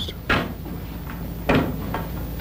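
Two sharp knocks about a second apart, over a steady low background noise.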